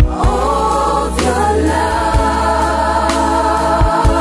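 Mixed choir of men and women singing a gospel song in harmony, holding long notes, over a bass line with drum hits about once a second.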